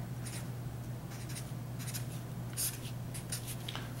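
Marker pen scratching on paper as numbers are written, in a run of short, separate strokes over a steady low hum.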